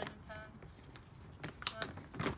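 A few sharp clicks and crinkles of a plastic dog food bag as a bullmastiff puppy mouths and tugs at it, with a brief voiced sound in between.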